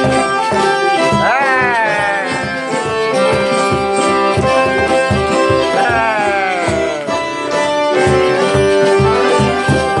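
Live acoustic folk band playing: banjo and hand-held frame drums keep a steady beat under held notes, and twice a long note slides down in pitch.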